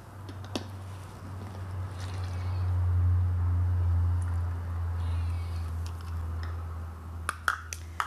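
Light clicks of a plastic funnel and measuring cup knocking against a plastic bottle as liquid Castile soap is poured through the funnel, with a few clicks close together near the end. Under them a low, steady hum swells through the middle and fades.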